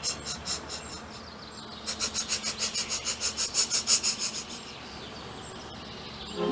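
Steam locomotive chuffing sound effect, a quick even rhythm of about five puffs a second that fades out, then comes back louder about two seconds in and dies away before the end.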